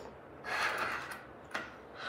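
A plastic accelerator part sliding into a shade's headrail track: a scraping rush of about half a second, then a light click.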